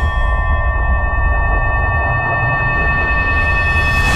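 Trailer sound design: a sustained ringing drone of several steady tones held over a deep rumble, with a rising hiss swelling in toward the end.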